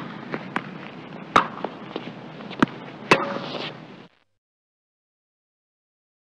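Several sharp cracks or pops at uneven intervals over a steady hiss, the whole sound cutting off suddenly about four seconds in.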